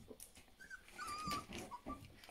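Young Rhodesian Ridgeback puppies, about three weeks old, squeaking: a few thin, high, wavering whimpers about halfway through and a couple of short squeaks near the end, with small knocks and shuffling among them.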